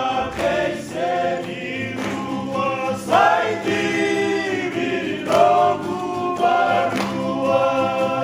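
A mixed group of voices singing together in harmony in long held notes, accompanied by strummed acoustic guitars and a ukulele.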